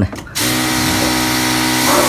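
Motorised sprayer running, a steady motor hum with the hiss of liquid spray mist from the wand nozzle. It starts shortly after a spoken word and cuts off near the end.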